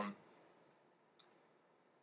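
Near silence: room tone, with a single short, faint click a little over a second in.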